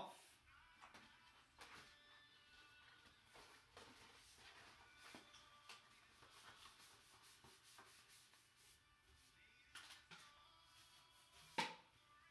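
Faint rustling and light taps of a large photo print, packing paper and a cardboard mailing tube being handled over a cardboard box, with one sharper knock near the end. Faint background music plays underneath.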